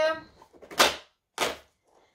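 Perforated cardboard door of an advent calendar being torn open by hand: a sharp rip a little under a second in, then a shorter, fainter one about half a second later.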